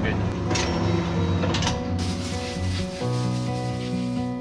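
Hose nozzle spraying water onto a cow's hoof, a steady hiss starting about halfway through. Soft guitar music comes in near the end.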